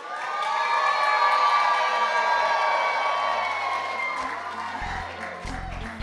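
Wedding guests cheering over music that swells in at the start; a bass beat comes in about five seconds in.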